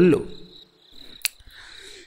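Faint crickets chirping as a background sound effect, with the end of a man's narration at the start and a single sharp click about a second in.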